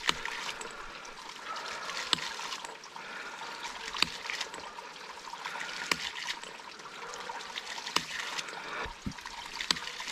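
Hydraulic ram pump running: its waste valve clacks about every two seconds over steady trickling and splashing water. The pump has just been restarted and air bubbles are still being worked out of the line.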